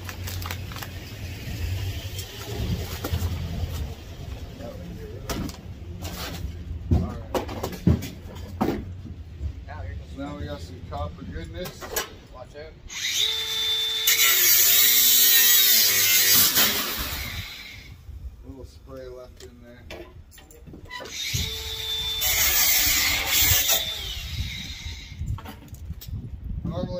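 Cordless drill running in two bursts, a longer one about halfway through and a shorter one near the end, its pitch bending as the speed changes. Scattered metal knocks and clanks come before it.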